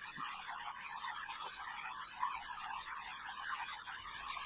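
Faint steady hiss of recording background noise, with no clear event.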